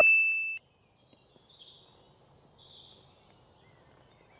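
Background music fading out in the first half-second, then faint bird chirps, scattered high and brief, over quiet outdoor ambience.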